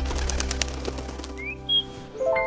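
A bird's wings flapping in a quick flurry as it takes off, followed by a short rising chirp and a brief high call near the end, over a held music chord that fades away.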